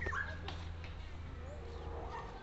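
A few short, high animal calls, the strongest just after the start, over a low steady rumble.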